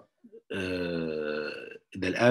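A man's voice holding one long hesitation vowel, an 'uhhh' of about a second and a half with a steady, slightly falling pitch.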